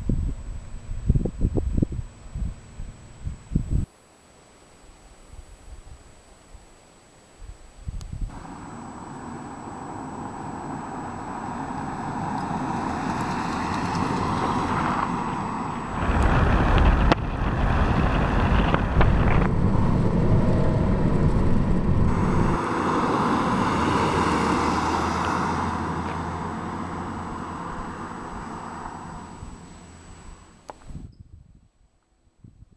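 Car driving on a road: a steady roar of tyre and wind noise that builds up, is loudest in the middle and fades near the end. The first few seconds hold gusts of wind buffeting the microphone.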